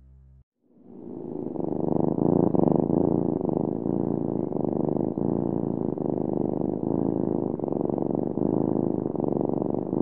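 A cat purring close up, a steady rapid rumble that fades in about a second in.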